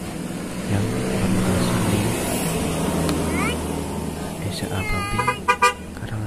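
A vehicle horn gives two short toots near the end, over the low, steady rumble of a running vehicle engine.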